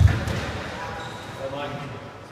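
A single heavy thud in a squash court as a player lunges for the ball, fading over about half a second. Voices follow about half a second later.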